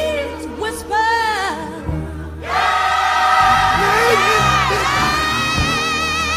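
Gospel singing: a solo voice sings short melismatic runs. About two and a half seconds in, the music swells into a loud, held chord of voices with vibrato.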